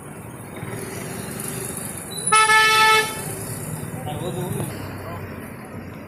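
A vehicle horn gives one flat honk of under a second, about two seconds in, over steady street traffic noise.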